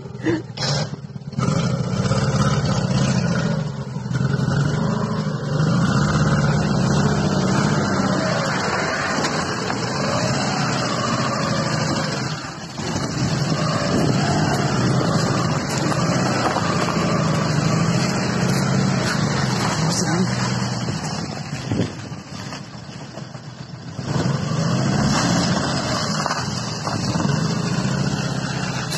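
A car engine running, its pitch slowly rising and falling, with voices over it.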